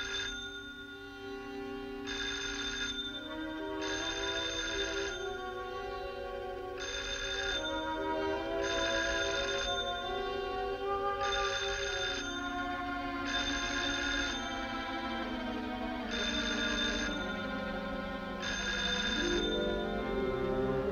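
Telephone bell ringing in repeated bursts about every two seconds, unanswered. Film-score music with held low notes plays underneath.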